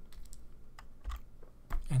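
Several scattered light clicks and taps of a stylus on a tablet while a line is drawn on a slide.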